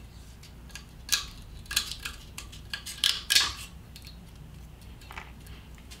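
Scissors trimming a strip of sandpaper-like adhesive non-slip grip tape: a handful of short, sharp snips and crackles spread over several seconds.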